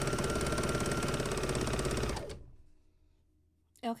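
Serger (overlock machine) running at speed with a fast, even stitching rhythm as it sews a knit waistband seam. It winds down and stops about two and a half seconds in.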